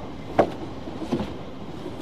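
Heavy timber boards knocking against each other and the ground as they are set down at the edge of a grave: one loud thud just under half a second in, then a softer double knock about a second in.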